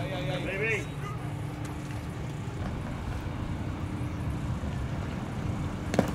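Outdoor ballfield background: a steady low rumble with a faint steady hum. A player's voice calls out briefly in the first second.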